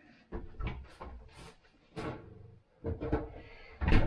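Kitchen handling sounds: plastic bread bags rustling and items knocking, then a sharp thump near the end as the fridge door is shut.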